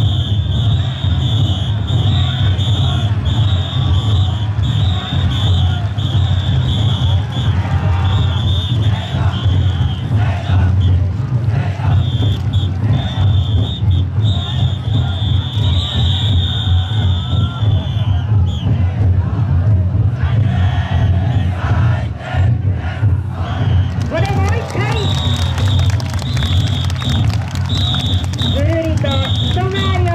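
The big taiko drums inside several Niihama taikodai drum floats beating fast and without a break, with a crowd shouting and chanting over them. A high, piercing tone comes and goes, and the shouting grows louder in the last few seconds.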